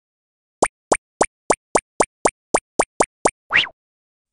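Cartoon sound effects: a quick run of eleven short plops, about three a second, ending in a longer rising swoop.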